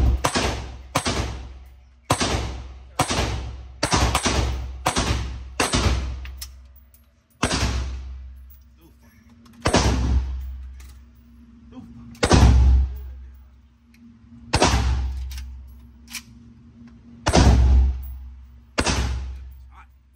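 Gunshots at an indoor range, each with a short echoing tail: a quick string of about nine shots at roughly one a second, then single shots every two to three seconds.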